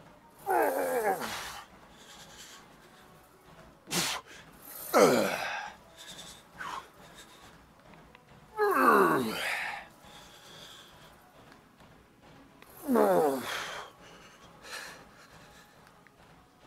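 A man groaning with strain through a set of hack squats taken to failure: four loud groans about every four seconds, one with each hard rep, each falling in pitch. A short sharp click comes just before the second.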